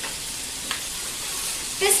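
Ground sausage sizzling in a skillet while a spatula stirs it, a steady frying hiss with one light tap about two-thirds of a second in.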